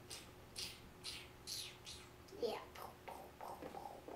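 A child's quiet, indistinct voice murmuring from about halfway through, after a few short soft hissing sounds.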